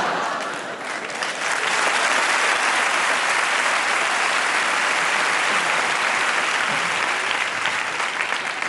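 Studio audience applauding steadily, with a brief dip just under a second in before the clapping swells and holds.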